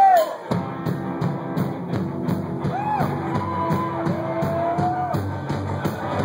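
Indie rock band playing live: a held note ends right at the start, and about half a second in the full band kicks in with a steady drum beat and guitars.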